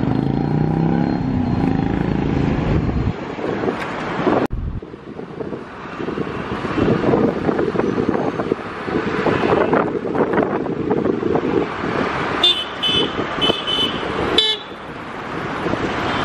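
Road traffic heard from a moving vehicle: an engine speeding up at first, then steady road and traffic noise. A vehicle horn toots in several short blasts near the end.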